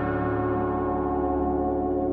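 Ambient background music: a sustained, bell-like chord held steady, its upper tones slowly fading.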